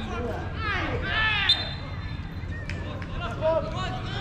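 Footballers shouting calls across an open pitch, with one sharp thud of a ball being kicked about a second and a half in.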